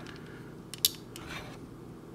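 Hard plastic parts and joints of a transforming robot action figure clicking as they are handled, with one sharp snap a little under a second in and a softer rattle shortly after.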